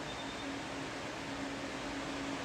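Steady background hiss with a faint low hum: room tone in a pause between speech.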